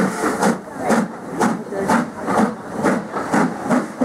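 Steam locomotive working hard as it hauls its train, with exhaust beats at about two a second over a continuous hiss of steam.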